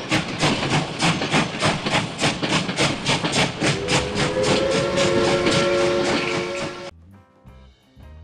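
Steam locomotive chuffing steadily, about three to four beats a second, with its whistle blowing one long chord of several tones from about halfway in. Both cut off suddenly about a second before the end, leaving quieter music.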